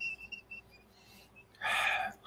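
A few faint, brief high-pitched whistling tones, then a short breath noise near the end.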